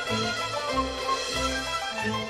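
Cantonese opera ensemble playing instrumental music: a low bass note repeats about every half second under higher melody lines.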